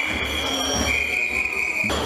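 Several whistles blown together in long, shrill held blasts, one steady note giving way to another about a second in and again near the end, over the din of a noisy crowd in a large chamber.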